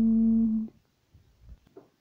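A voice holding one steady hummed or sung note, which cuts off about two-thirds of a second in; then near quiet with a few faint clicks.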